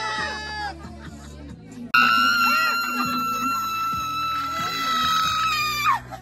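A woman screaming for the camera, playfully: a first scream tails off in the first second, then a loud, high-pitched scream starts suddenly about two seconds in and is held for about four seconds before dropping in pitch at the end. Background music plays underneath.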